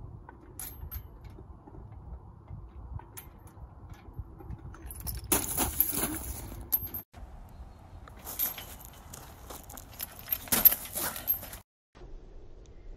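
Metal swing chains jangling and rattling in two spells, the first about five seconds in as the rider lets go and lands, with scuffing in gravel; the sound cuts off suddenly near the end.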